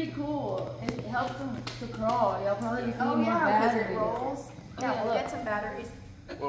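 Indistinct voices of people talking, over a low steady hum.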